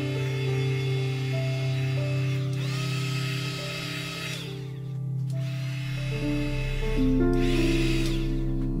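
Ambient background music with long held notes. Over it a handheld heat gun's fan whirs as it blows over wet resin, cutting out about four and a half seconds in and starting again near seven seconds.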